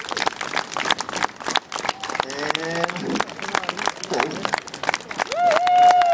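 Crowd clapping together in a fast, even stream of claps, with a man's long drawn-out shouted vowels over it twice.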